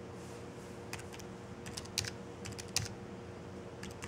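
Typing on a Belkin Bluetooth keyboard for the iPad Mini: irregular key clicks starting about a second in, some strokes louder than others.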